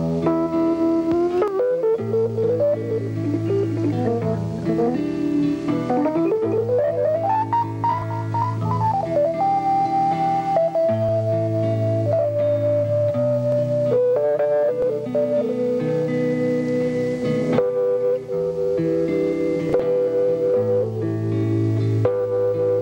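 Instrumental break in a folk-rock song: guitar and bass accompaniment under a lead melody that bends and slides up and down in pitch, then settles into long held notes.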